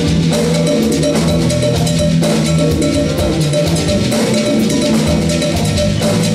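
Afro-Cuban folkloric jazz band playing live, with drum kit and hand drums carrying a steady, driving rhythm under the other instruments.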